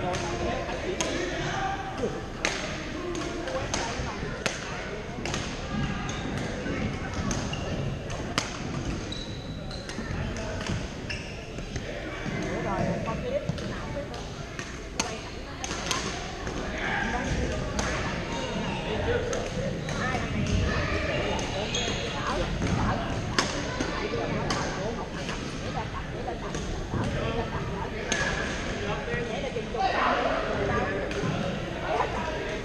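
Badminton rackets striking shuttlecocks on several courts in a large gym: many sharp, irregular hits about a second apart, over steady background chatter of players.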